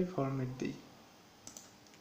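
A short spoken word, then a computer mouse button clicking, a quick pair of sharp clicks about one and a half seconds in.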